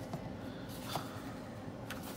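Paper pages of a printed comic booklet being handled and turned, a soft rustle with two brief taps about a second apart.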